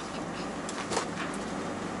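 Steady engine and road drone of a Tata Daewoo Prima 5-ton truck, heard inside the cab as it pulls away, with a faint click about a second in.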